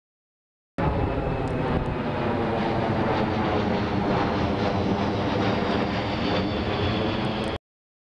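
C-17 Globemaster III military jet transport flying low overhead, its four turbofan engines giving a loud, steady roar with a thin high whine. It starts abruptly about a second in and cuts off suddenly just before the end.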